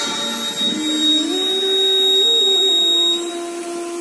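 A quiz buzzer system gives a steady, high electronic beep for about three seconds, then cuts off. Under it a Hindi film song plays, with a held sung note that steps up in pitch and back down.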